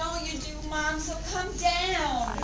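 Wordless, high-pitched human vocal cries: several drawn-out notes whose pitch slides up and down, sung or wailed rather than spoken.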